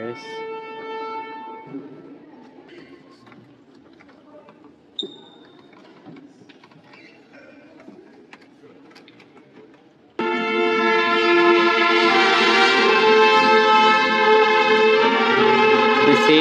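Low church murmur with a single knock about five seconds in, then about ten seconds in, loud brass-led music suddenly starts and holds, with trumpets over full chords: the processional music for the chambelanes of honour entering.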